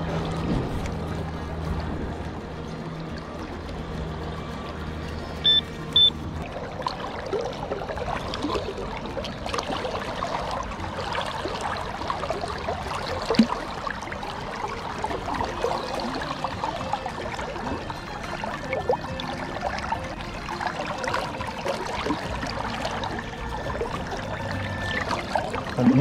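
Shallow river water splashing and sloshing as gloved hands dig through the streambed. A low steady hum runs under it for the first six seconds, and two short high electronic beeps come near its end.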